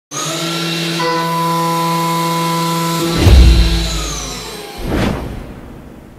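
Logo-sting music: a held synth chord, then a deep boom about three seconds in and a second sweeping hit near five seconds, fading out.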